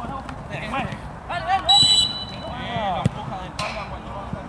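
Players shouting on a football pitch, with a short, loud, steady whistle blast about two seconds in, which is the sound of a referee's whistle. A single sharp knock comes about three seconds in.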